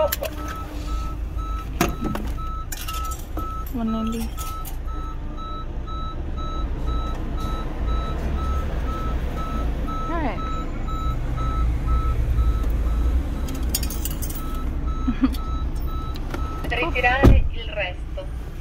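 Rapid, evenly repeating electronic beeps on one high tone over a car's idling engine rumble; the beeping stops with a sharp click about a second before the end.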